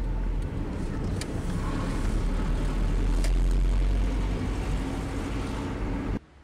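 Cabin noise of a 1997 Skoda Felicia pickup on the move: its 1.3-litre petrol engine and tyres give a steady low rumble, with a couple of faint clicks.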